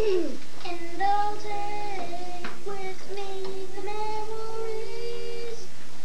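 Children's voices singing long held notes, at times two pitches together, opening with a quick downward swoop.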